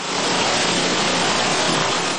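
Muddy floodwater rushing in a fast torrent: a steady, loud, even rush of water.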